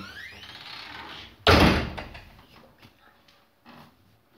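A single sudden loud thump about one and a half seconds in, fading away over about half a second, followed by a few faint soft knocks.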